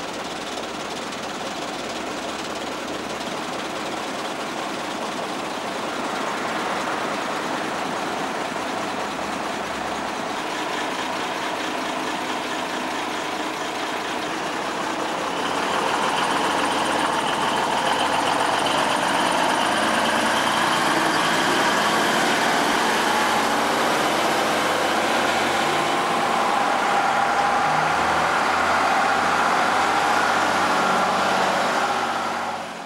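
Recovery truck's engine running steadily, getting louder about 6 seconds in and again about 15 seconds in as the truck pulls away.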